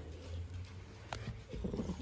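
Small dog growling low and steady while guarding its chew bone from a reaching hand, with a rougher growl building near the end.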